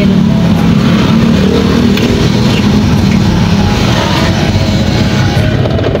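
Car cabin noise while driving slowly: a steady low engine and road hum with tyre noise from a wet road surface.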